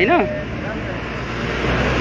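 A voice finishes a couple of words, then a steady low rumble of a road vehicle's engine running.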